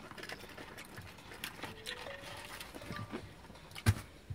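Eating and food-handling noises: scattered small clicks and rustles of fingers picking at fried chicken and chips in a cardboard bucket, with one sharp knock just before the end, the loudest sound.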